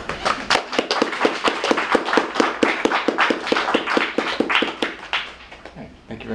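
A small audience applauding, with close, even hand claps, tapering off near the end.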